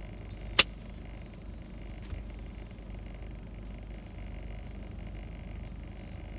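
Steady low hum of a car cabin, with one sharp click about half a second in and a faint tick about two seconds in.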